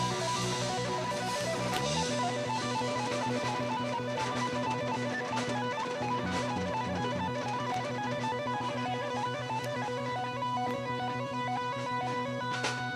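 Live dance band playing an instrumental number, with electric guitar and keyboard over a sustained bass line that moves to a new note about two seconds in.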